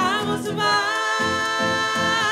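Gospel choir singing a cappella, with a long held high note with vibrato starting just under a second in over a pulsing low vocal line.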